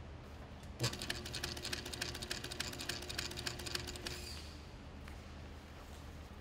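Sailrite 111 walking-foot sewing machine stitching a seam through upholstery fabric for about three seconds: it starts suddenly about a second in, a steady motor hum under a fast, even clatter of needle strokes, then stops and a high motor whine fades away.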